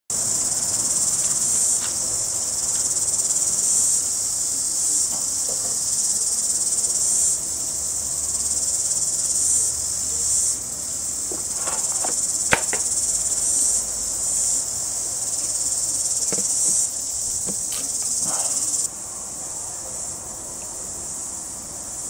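A steady, high-pitched insect chorus of cicadas or crickets fills the background. A single sharp click sounds about halfway through.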